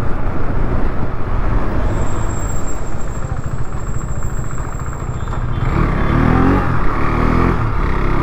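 KTM RC 390's single-cylinder engine running on the move, with steady wind and road rush. About six seconds in, the engine note rises briefly as the bike accelerates.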